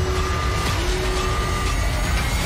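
Action-trailer sound mix: a loud, heavy low rumble under held tones that twice swell upward in pitch.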